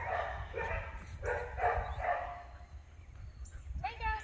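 A dog barking, a run of about five short barks in the first two and a half seconds, then fewer.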